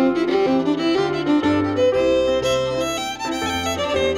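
Irish traditional fiddle playing a quick run of melody notes, accompanied by a Nord stage piano with held bass notes and chords that change about every half second to a second.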